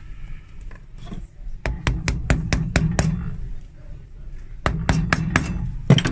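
Small hammer tapping a replacement heel tip's metal pin into the tube of a stiletto heel: two runs of quick sharp taps, about five a second, the first starting about a second and a half in and the second near the end.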